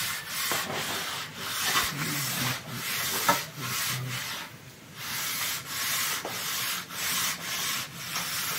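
Aluminium straight edge scraping back and forth along wet cement plaster as it is levelled, in repeated rough strokes of about a second each with a short pause midway.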